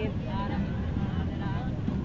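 Faint voices of people talking over a steady low rumble of road traffic.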